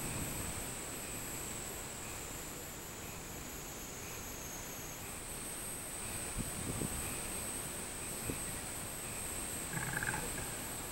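Minmin-zemi cicadas (Hyalessa maculaticollis) singing in the trees, a steady high-pitched buzz with a faint repeating pulse beneath it. About halfway through, one strand of the buzz drops out. A low rumble and a few soft knocks lie under it.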